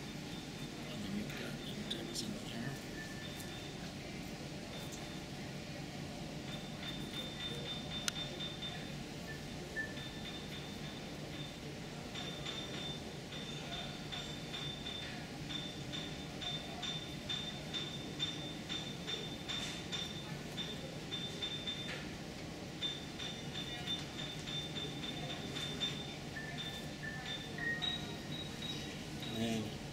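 Room ambience: indistinct background chatter with soft music. A faint high tone comes and goes, mostly in the second half.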